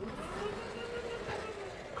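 A vertically sliding chalkboard panel being pushed up on its tracks. It gives a steady rolling rumble with a faint hum that rises and falls in pitch, for most of two seconds.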